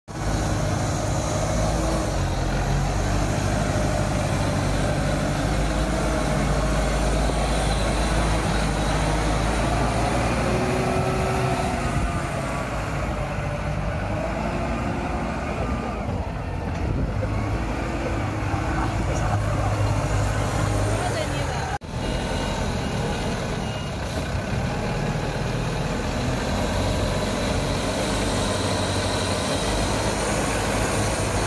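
Engine of a 4.5-ton four-wheel-drive all-terrain forklift running under load as it works over rough, dug-up dirt ground. Its pitch rises and falls with the throttle.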